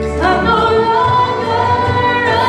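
A woman singing a Christian worship song into a handheld microphone over musical accompaniment. Her phrase begins just after the start with an upward slide and settles into a long held note.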